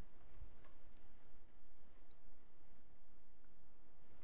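Quiet room tone in a small room: a steady low hum, a few faint soft ticks and two brief, faint high-pitched electronic tones.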